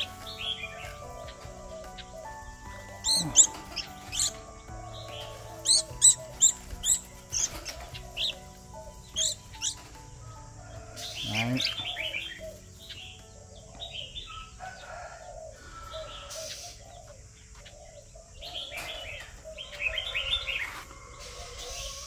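Birds chirping: short, sharp, high chirps in quick clusters several times over, with softer calling in the background.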